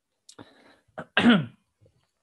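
A man clearing his throat: a short breath, then one loud, voiced throat-clear a little over a second in, falling in pitch.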